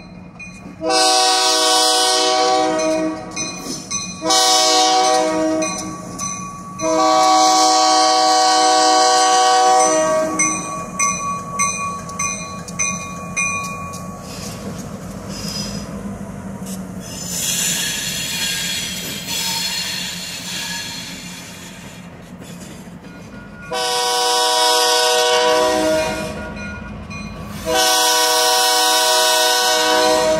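First Coast Railroad diesel locomotive's multi-chime air horn sounding for a grade crossing: three blasts, the third the longest. The locomotives' diesel engines then run for about a dozen seconds as they come into the crossing. Two more long horn blasts follow near the end.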